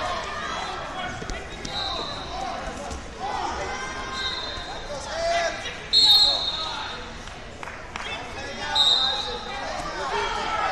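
Busy tournament-hall ambience: voices and shouts of coaches and spectators echoing in a large hall, with short, high, steady referee-whistle blasts from the mats, four of them, the loudest about six seconds in, and a few thumps.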